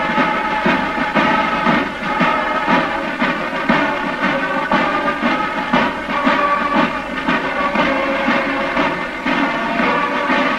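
Marching band playing: wind instruments hold steady, sustained notes over a regular drum beat.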